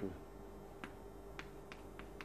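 Chalk tapping on a blackboard while writing: four short, sharp clicks spread over the second half.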